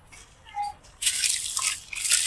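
Water dripping in a few faint plinks from a soaked sand-cement block into a basin of muddy water, then, about a second in, loud splashing and sloshing as the block is plunged into the water and crumbled by hand.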